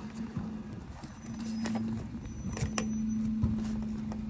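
Terberg bin lift on a Dennis Eagle refuse truck tipping a wheelie bin: a steady low hydraulic hum, broken briefly about two seconds in, with scattered knocks and clatters from the bin and its contents.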